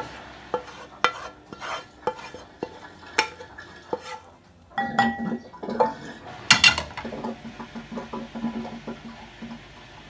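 Spoon and cutlery clinking and scraping against a ceramic bowl and frying pan while food is served and garnished, in a run of short knocks and taps, with a louder clatter about six and a half seconds in.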